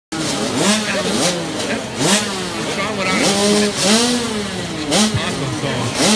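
Several youth motocross dirt bikes revving at the starting gate, their engines blipped up and down over and over in overlapping rising and falling pitches.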